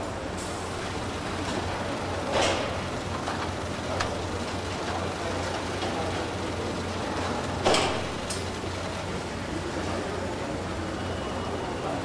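Car factory production-line noise: a steady machinery hum with a few short hissing bursts, the loudest about eight seconds in.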